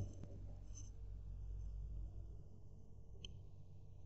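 Faint sound of a pen writing on lined exercise-book paper, with a small click about three seconds in.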